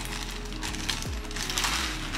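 A clear plastic zip-top clothing bag being pulled open and crinkling, loudest in the second half. Background music with a steady low beat plays under it.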